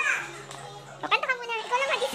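A small child's high-pitched voice, a short call at the start and more chatter from about a second in.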